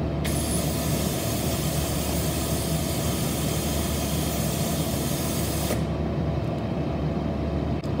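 Vacuum on the HCR-5 collaborative robot's tool hissing steadily for about five and a half seconds, starting and stopping abruptly as the program switches its digital output high and then low.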